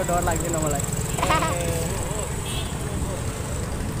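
A young man's voice speaking a few short phrases in the first half, over a steady low rumble of outdoor street noise.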